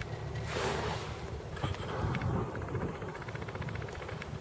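Wind buffeting the camera microphone as a steady low rumble, with a brief louder rush about half a second in, over choppy water around a small boat.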